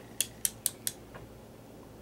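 Four quick, sharp metallic clicks about a fifth of a second apart in the first second, then a fainter click, from small metal hand tools being handled.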